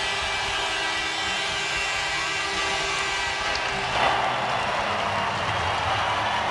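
Arena goal horn blaring over a cheering crowd after a goal. The horn cuts off about four seconds in, and the crowd cheering swells and carries on.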